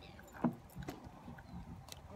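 A few short, sharp clicks and knocks from the fishing rod and reel being handled, the loudest about half a second in, over a low background rumble.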